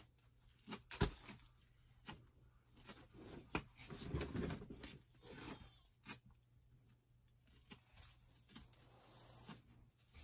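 Feathers being plucked by hand from a drake mallard's breast: short, soft tearing sounds at irregular intervals.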